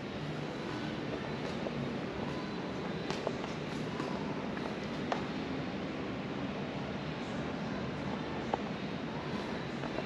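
Steady room tone of a large hall: an even hiss of ventilation, with a few faint taps scattered through it.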